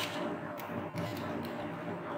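A few faint computer mouse and keyboard clicks over a steady low background hum.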